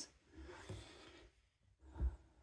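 Near silence: faint room tone with a soft, brief hiss lasting under a second.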